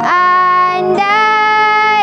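A girl singing a Malay patriotic song over a backing track, holding two long notes, the second one starting about a second in at a slightly different pitch.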